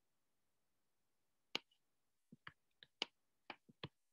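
Computer mouse clicks in near silence: one click about one and a half seconds in, then a quick run of about seven clicks near the end.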